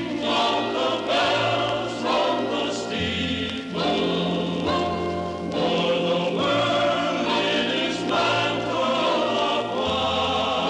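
A choir singing slow, sustained chords that change about once a second over a low bass line.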